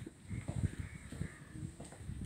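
A bird calling faintly a couple of times, crow-like, over footsteps.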